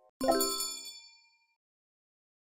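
A single bright chime struck once, ringing and fading away within about a second.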